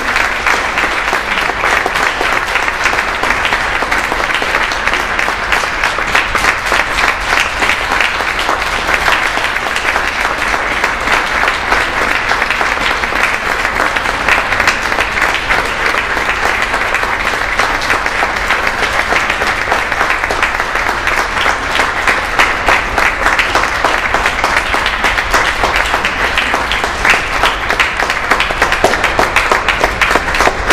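Sustained applause from a concert audience, with the choir members and conductor on stage clapping along, a dense, steady wash of hand claps.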